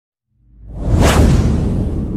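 Whoosh sound effect for a logo reveal: after a moment of silence a rising whoosh with a deep rumble underneath swells up, peaks just after a second in, and slowly fades.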